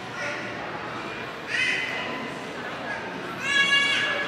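A young child's high-pitched voice calling out twice, once briefly about a second and a half in and again, louder and held longer, near the end, over a low murmur of people talking in a large hall.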